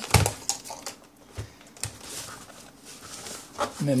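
Scattered clicks and knocks of handling, loudest right at the start, as an analog multimeter and its test probe are set against a metal chassis on a workbench.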